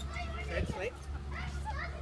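Children's voices and chatter at a playground, with a louder short child's vocalization about half a second in, over a steady low hum.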